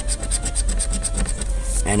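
A coin-shaped scratcher scraping the coating off a scratch-off lottery ticket in quick back-and-forth strokes.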